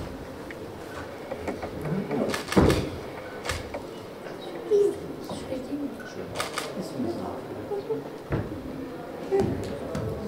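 Quiet room with scattered soft voices and a few sharp clicks and knocks, about 2.5, 3.5, 6.5 and 8.3 seconds in.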